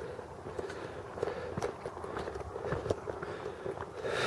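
Footsteps on a loose gravel path, walking downhill slowly, with irregular scuffs and stone clicks underfoot.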